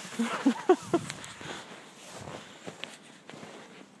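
Footsteps in snow, with a few short vocal sounds in the first second.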